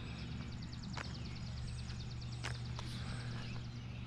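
Songbirds chirping; one bird gives a long, fast, high trill of about three seconds, over a steady low hum.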